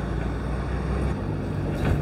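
A steady low rumble of background noise, heavier for about the first second and then easing off.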